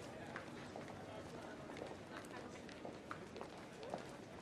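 Indistinct background murmur of voices with scattered footsteps and small clicks.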